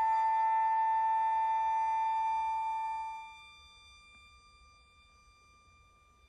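Contemporary chamber ensemble holding a few high sustained notes that die away about three seconds in, leaving only a faint thin high tone over near silence.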